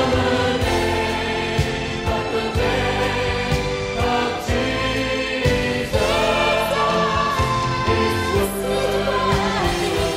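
Live Christian praise-and-worship music: a choir singing over a band with a steady beat.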